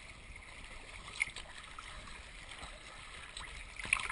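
Water sloshing and lapping close to the microphone on flat water, with light splashes from strokes through the water; one sharper splash comes about a second in, and louder splashes begin at the very end.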